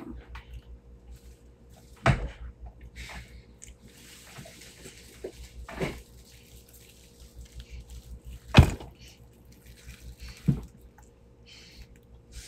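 Handling noise: four short, sharp knocks, the loudest a little past the middle, over faint rustling and a low hum.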